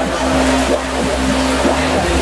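Loud music from a truck-mounted car-audio system, in a stretch without the beat: a held deep bass and a sustained tone carry on steadily.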